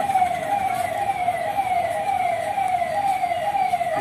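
An electronic siren sounding in quick, evenly repeated falling sweeps, about two a second.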